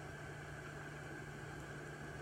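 Quiet room tone: a steady low hum with a faint even hiss.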